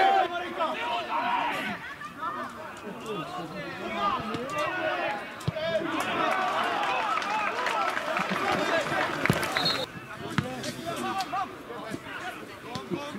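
Several voices shouting at once across a football pitch, overlapping calls from players and spectators, with a couple of sharp knocks of the ball being kicked.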